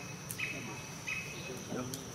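Insects calling: a steady high-pitched drone with a short chirp repeating about every 0.7 seconds.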